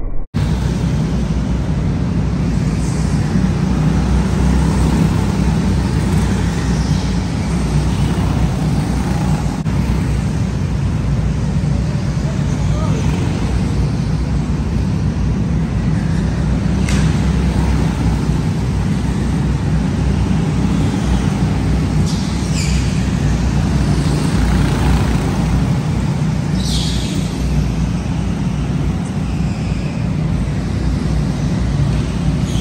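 Go-karts running laps of an indoor track: a steady low rumble fills the hall, and a few brief rising and falling high sounds come as karts pass near.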